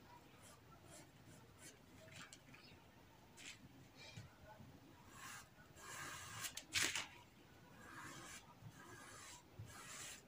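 Faint rubbing and rustling of printed fabric being marked with tailor's chalk and smoothed flat by hand on a table, with one sharp click about seven seconds in.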